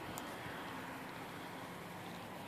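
Faint, steady background hiss with a faint low hum and no distinct events.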